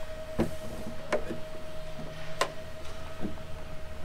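A few scattered knocks and clicks, one a little past the middle louder than the rest, as a person climbs out of an aircraft's access hatch, bumping against the panel and step. A steady hum runs underneath.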